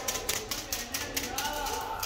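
Rubber-band-powered model ornithopter flapping its wings in flight, a rapid run of clicks and clatter.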